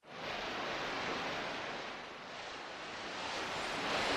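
A rushing, surf-like noise fading in from silence, swelling, easing slightly about halfway through, then building again, with no music or voice in it.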